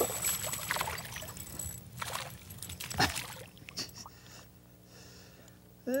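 A hooked bass splashing and thrashing at the water's surface as it is played in on the line. The splashing is busiest in the first three seconds, then dies away.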